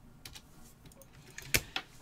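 Hard plastic trading-card holders clicking faintly as they are handled, with two sharper clacks near the end as a cased card is set down on a stack of cases.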